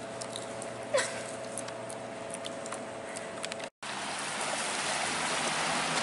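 A steady hum with one short, sharp squeak falling in pitch about a second in. The sound cuts out briefly past the middle, then a steady wash of ocean surf sets in and grows a little louder.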